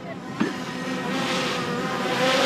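Small quadcopter drone's propellers buzzing as it hovers close by, growing louder as it comes in. A light click about half a second in.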